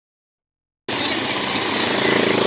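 Silent for most of the first second, then street noise sets in at once, with a motorcycle engine running close by.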